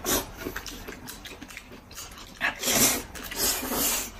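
Noodles being slurped from a bowl of beef noodle soup: a short slurp at the start, then two longer, louder slurps in the second half.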